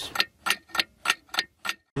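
Stopwatch ticking sound effect: steady sharp ticks, about three a second, that stop just before the end.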